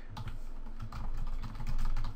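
Typing on a computer keyboard: a quick, uneven run of key clicks.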